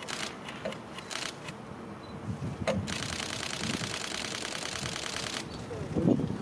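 Camera shutter clicking: a few single clicks, then a rapid continuous burst of shots starting about three seconds in and lasting about two and a half seconds.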